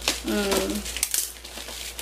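Yellow plastic bubble-wrap mailer crinkling as it is cut and pulled open with scissors, with a few sharp clicks about a second in. A short hummed vocal sound comes early on.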